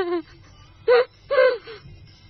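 A woman laughing: the tail of a laugh at the start, then two short, loud bursts of laughter about half a second apart.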